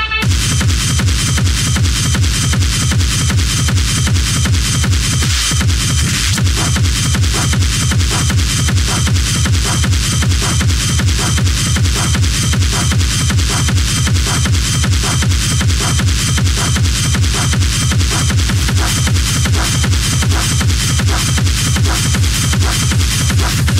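A DJ mix of hard electronic dance music: a steady, evenly pulsing kick-drum beat under hi-hats and synth sounds, running without a break.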